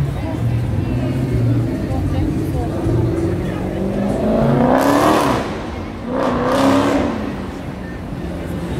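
Cars accelerating past close by, two passes in a row about five and six-and-a-half seconds in, each engine note rising, over steady city-street background noise.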